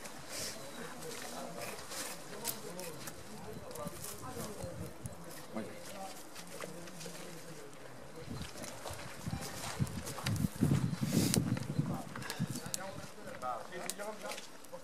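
Indistinct conversation among several people, with scattered clicks and knocks throughout. The voices get louder about ten to twelve seconds in.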